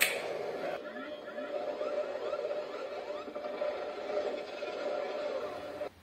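Action-film soundtrack playing from a television in a small room: indistinct voices and sound effects with faint rising tones, opening with a sharp click.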